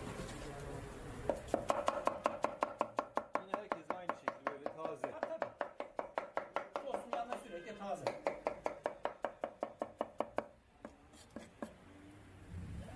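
Kitchen knife rapidly chopping an onion on a wooden chopping block, an even run of sharp knocks at about five strokes a second that stops a little before the end, followed by one or two last taps.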